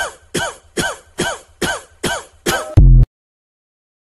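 Intro music: a short vocal-like sound that rises and falls in pitch, repeated about two and a half times a second, then a loud low bass hit near the end that cuts off suddenly into silence.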